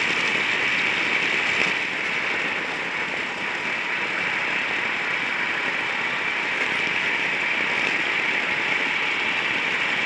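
Onboard sound of a gas-powered racing kart at speed: the kart's engine running steadily with a continuous rushing noise, easing off slightly about two seconds in and picking back up.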